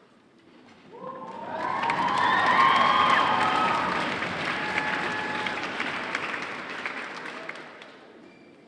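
Audience applauding and cheering, with a few shouted whoops early on. It swells up about a second in and dies away near the end.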